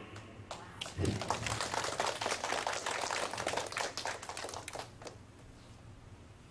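Audience applauding: a dense patter of clapping starts about a second in and dies away near the end.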